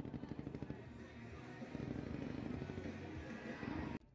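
Rapid, continuous gunfire from soldiers' blank-firing rifles and machine guns in a mock battle, shots following each other several times a second.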